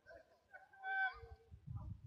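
A single brief high-pitched call, rising out of near quiet about halfway through, over a low rumble that comes and goes.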